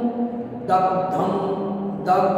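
A man's voice chanting a Sanskrit verse (shloka) in a slow, sung recitation with long held notes. It breaks off briefly about half a second in, then goes on.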